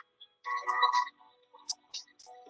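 A short electronic quiz sound effect, about half a second long and starting about half a second in, as the correct answer is revealed, over a soft music bed; a few brief ticks follow near the end.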